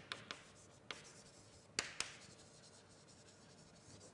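Writing on a lecture board: a few sharp taps, the loudest two close together about two seconds in, with faint scratching between.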